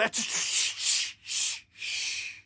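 A man's breathy, hissing laughter through the teeth, in four wheezy bursts.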